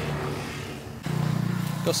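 A road vehicle's engine running nearby: a low steady hum over a hiss that gets louder about halfway through.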